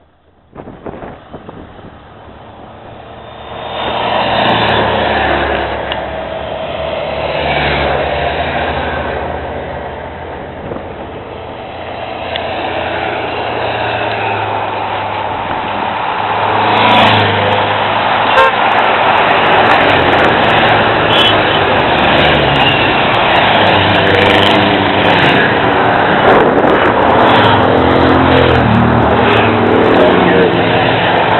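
Motorcycle and car engines of a race convoy passing close by, growing louder from about four seconds in, then a continuous rush of passing vehicles with car horns tooting in the second half.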